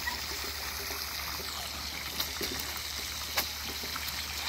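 Muscovy ducks splashing as they bathe in a shallow puddle: a steady wash of trickling, lapping water with a few sharper splashes, one about two seconds in and a louder one past three seconds.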